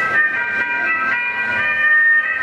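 Opening of the recorded Sundanese Jaipongan dance accompaniment: several steady, high held instrumental tones.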